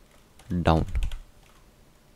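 Typing on a computer keyboard: a short run of faint key clicks in the first half-second as a word is typed. A man's voice says one word over it, and that word is the loudest sound.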